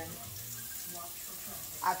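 Plant-based meatballs sizzling steadily in hot oil in a cast iron skillet on medium heat as they are turned.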